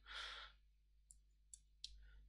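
A man's soft in-breath between sentences, followed by near silence with a few faint short clicks.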